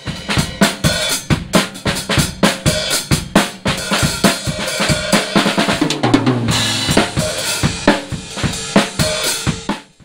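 Mapex acoustic drum kit played in a fast groove with kick, snare and cymbals, with a descending fill across the toms about six seconds in. The playing stops abruptly just before the end.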